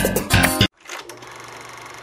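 A guitar-led music track stops abruptly about two-thirds of a second in. It is followed by a steady, rapid mechanical clatter of a film projector running, used as a sound effect.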